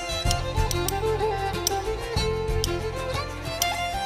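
Instrumental break of an Irish folk song: a fiddle plays a lively ornamented melody over bass and a steady percussive beat.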